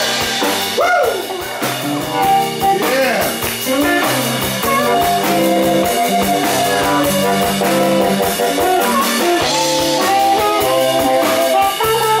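Live blues band playing an electric guitar and drum-kit groove. A singer's voice slides in pitch over the band in the first few seconds, then the instruments carry on alone.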